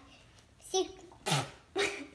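A child's voice making three short non-speech bursts about half a second apart, the middle one loudest.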